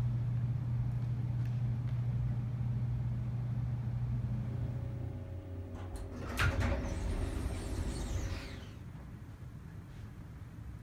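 Elevator: a steady low hum that stops about halfway through, then a clunk and the stainless-steel doors sliding open with a hiss that falls away over about two seconds.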